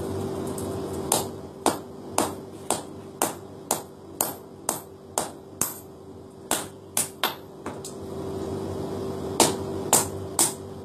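Hammer striking metal on an anvil while forging a keris blade: a run of sharp, ringing blows about two a second, a pause of a second or two, then the strikes resume near the end, over a steady hum.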